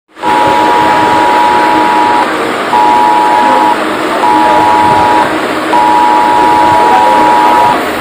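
Smartphone sounding a cell-broadcast 'Emergency alert: Extreme' test alarm. Two high tones sound together in a repeating on-off pattern: a two-second blast, a short gap, two one-second blasts, then another two-second blast, over a steady noisy buzz.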